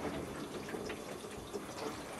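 Water from a hose spraying onto the motorhome's roof seams during a leak test, heard from inside the van as a faint, steady splashing hiss.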